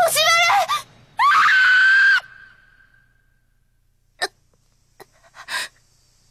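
A girl's voice shouts "Hoshimaru!" with a rising pitch, then a loud, high scream held for about a second that trails away. Near silence follows, broken by a few short soft clicks.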